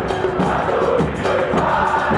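A football supporters' chant being sung, with background music under it.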